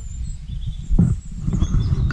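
Uneven low rumble of wind buffeting the microphone outdoors, with one dull thump about a second in.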